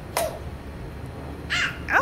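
A toddler's short shrill cries: a sharp one just after the start, then two near the end, falling steeply in pitch, the last the loudest.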